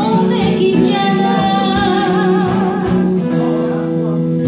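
Live band playing a French chanson: a woman sings a long, wavering held note over electric guitar, bass guitar and drums, with a cymbal struck at a steady beat.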